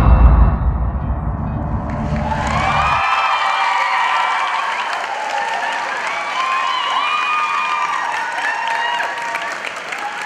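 Dance music ends on a loud, low final beat that rings out and dies away over about three seconds. Audience applause and cheering rise about two seconds in and carry on, with high cheering voices over the clapping.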